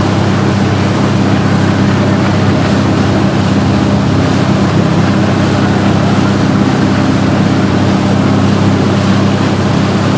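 Wakesurf boat's inboard engine running steadily under way, a constant low drone, mixed with the rush of water from the wake and wind on the microphone.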